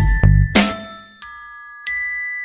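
Background music of chiming, bell-like struck notes ringing over a bass line. The bass fades out about a second in, leaving the notes ringing, and a new note is struck near the end.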